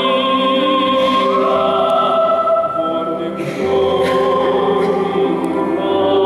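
Mixed choir singing a Christmas carol in slow, sustained chords with a male solo voice. The sound dips briefly about three and a half seconds in, then a new chord is taken up.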